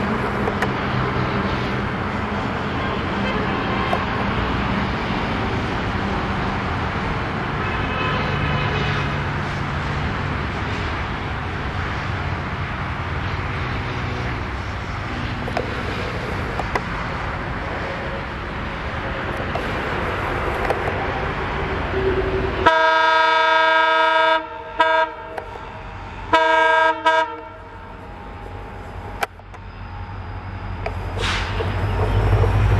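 WDP4 diesel-electric locomotive approaching on a train, its EMD two-stroke diesel engine and rail noise making a steady rumble. Near the end it sounds its multi-tone air horn: a long blast, a short toot, then another blast of about a second.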